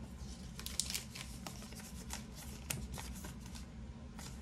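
Baseball cards and plastic card holders being handled: a string of light clicks and soft rustles, the sharpest just before a second in and again past two and a half seconds.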